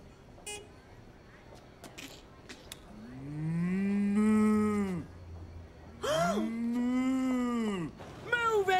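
A man mooing like a cow: two long moos, each rising and then falling in pitch, about three seconds in and again near the end.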